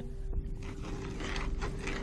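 Faint rasping strokes from a small hand-operated metal device being worked, over a steady faint hum.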